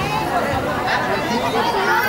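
Several people talking at once: crowd chatter.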